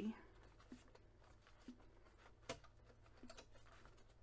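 Near silence with faint handling sounds of paper pages being checked on a metal wire binding, a few light clicks, the sharpest about two and a half seconds in.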